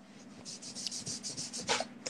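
Rapid soft scratching strokes, about nine a second for about a second, from a hand rubbing close to the phone's microphone, followed by one short hiss.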